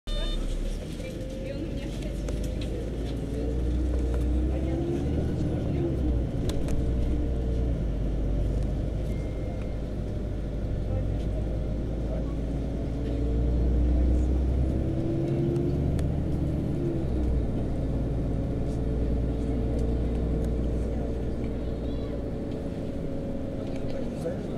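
City bus heard from inside the passenger cabin while driving: a deep engine and drivetrain rumble, with a whine that climbs and falls several times as the bus speeds up and slows.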